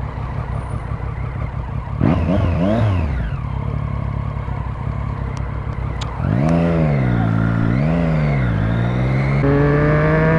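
Motorcycle engine under the rider, revving up and dropping back as it accelerates and eases off through the gears, with two rises about two seconds and six seconds in, then a steady climb in pitch near the end as it pulls away.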